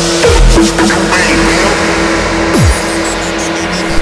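Makina electronic dance music playing in a DJ mix: the kick-drum beat drops out about half a second in, leaving a held synth note and a sharp downward pitch swoop a little past halfway, before a new section starts near the end.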